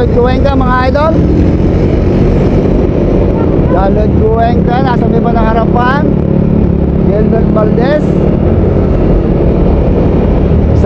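Motor vehicle engine running at road speed with wind rushing over the microphone, a steady loud rumble. Bursts of a man's voice break in near the start, around four to six seconds in, and again near eight seconds.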